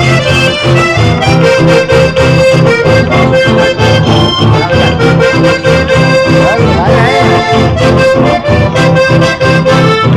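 Live band playing, an accordion carrying sustained melody notes over strummed acoustic guitars and a steady low rhythmic pulse.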